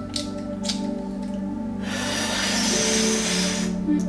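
Soft background music with steady held tones. About two seconds in, a man draws a long, noisy slurping breath in through his mouth for about two seconds, a pretend sip.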